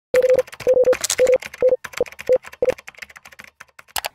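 Intro sound effect of rapid typing-like clicking mixed with about seven short mid-pitched beeps, like a computer processing data. It is dense over the first three seconds and thins out toward the end.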